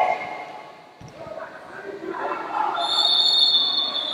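Voices shouting at matside during a grappling bout, with a single thud about a second in. From about three seconds in a steady high whistle-like tone sounds over the shouting.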